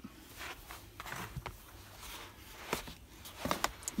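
Faint rustling and a few soft scuffs of bare feet slipping into a pair of worn leather ballet flats on carpet.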